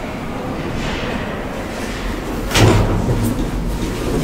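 Elevator doors sliding, with a sudden loud start a little past halfway, then a couple of sharp clicks.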